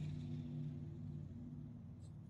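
Faint low hum that fades away over about a second and a half, with no distinct event.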